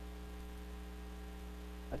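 Steady electrical mains hum with a stack of overtones, unchanging throughout.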